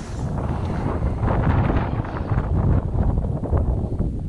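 Wind buffeting the microphone: a loud, uneven low rumble that flutters throughout.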